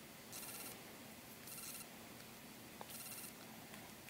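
Very faint handling sounds of a pin being worked into a faux-sheepskin doll boot over quiet room tone: a few soft brushing noises and one small click about three seconds in.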